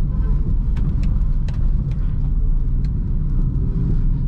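Steady low rumble of a Honda car's engine and road noise, heard inside the cabin while it drives along.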